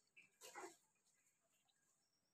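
Near silence, with one brief faint sound about half a second in that slides downward in pitch.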